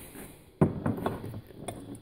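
A sharp knock a little over halfway into the first second, then a few lighter clicks and clinks: a glass rum bottle and a drinking glass with ice being handled on a wooden counter.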